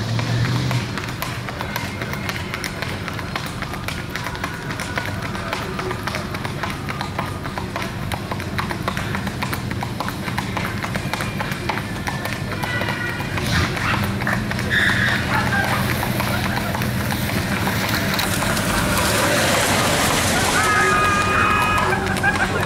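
Rapid hoofbeats of a black Tennessee Walking Horse gaiting on a paved road, over a steady low hum.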